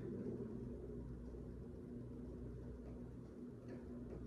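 Quiet room tone: a steady low hum with faint background hiss, and one faint click near the end.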